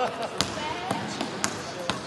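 A basketball being dribbled on a hardwood court: four bounces about half a second apart, with voices in the background.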